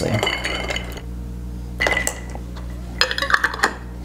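Bar spoon stirring ice cubes in a rocks glass, the ice and metal clinking against the glass in a quick run for about the first second. It is followed by a single ringing clink about two seconds in and a short cluster of clinks near the end.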